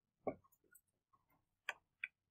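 A few faint, irregularly spaced clicks or taps, the sharpest near the end.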